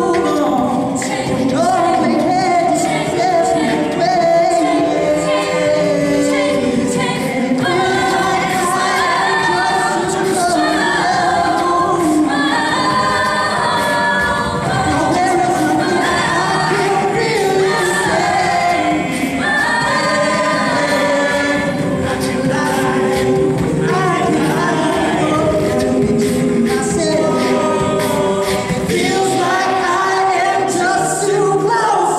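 Mixed male and female a cappella group singing live through stage microphones, the voices in shifting chords with no instruments.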